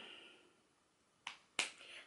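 Faint room quiet in a pause between sentences, broken by two short sharp clicks about a third of a second apart in the second half.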